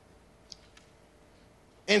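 Near silence: room tone with one faint click about half a second in, then a man's voice starts again near the end.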